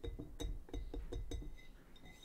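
A pink plastic stick pokes a hardened chunk of baking soda in a container of vinegar, making a quick string of light taps and clinks, about five or six a second, each with a faint short ring.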